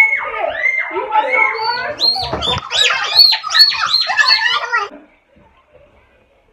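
A child's high-pitched cries and squeals, a quick run of rising-and-falling calls about three a second, stopping abruptly about five seconds in.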